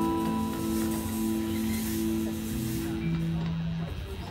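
Live rock band (guitars and keyboards) holding a long sustained chord; the held notes stop a little before the end, and a high hiss-like wash sits over the first three seconds.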